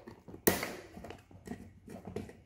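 Screwdriver turning a terminal screw on a plastic relay socket to clamp a wire: small scraping and handling clicks, with one sharper click about half a second in.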